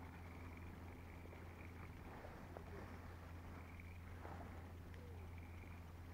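Faint, steady low hum of a boat's outboard motor running at trolling speed, with a few faint ticks.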